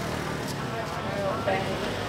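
Busy street ambience: faint voices of people nearby over a steady low hum of motorbike traffic.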